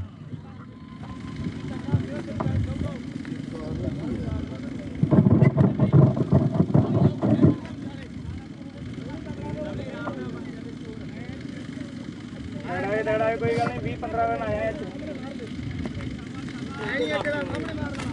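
Outdoor rumbling noise, loudest for about two and a half seconds a third of the way in, with brief men's voices calling out twice in the second half.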